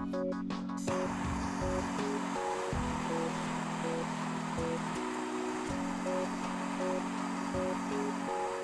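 Handheld Bernzomatic MAP-gas torch burning with a steady hiss that starts abruptly about a second in, as its flame heats a silicon strip. Background music with sustained chords plays throughout.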